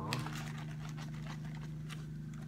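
Faint scattered clicks and light knocks of small items being handled while rummaging in a handbag pouch, over a steady low hum.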